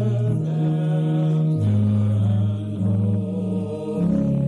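Mixed choir of men's and women's voices singing in long, sustained chords, moving to a new chord about a second and a half in and again a couple of times after.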